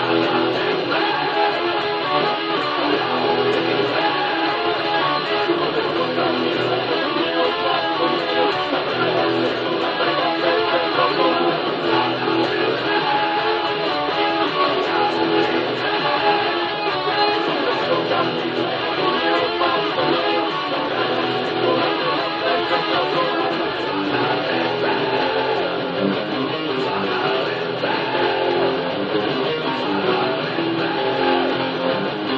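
Electric guitar playing a continuous rock riff at a steady level, without pauses.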